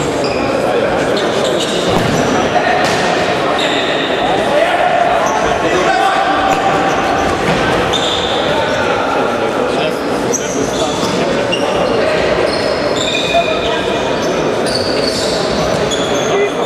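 Futsal being played in a sports hall, echoing: the ball being kicked and bouncing on the court, many short high squeaks of shoes on the floor, and players' voices.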